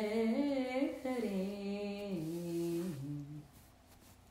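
A single voice humming a short, held melodic phrase that wavers and then steps down in pitch, ending about three and a half seconds in.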